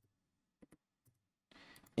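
A few sparse, faint clicks of computer keyboard keys being pressed: one at the start, a quick pair about half a second in, and another about a second in.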